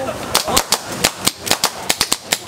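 A rapid, irregular volley of sharp cracks, about a dozen in two seconds, from several toy air pistols firing together at a balloon-shooting game, with balloons popping among the shots.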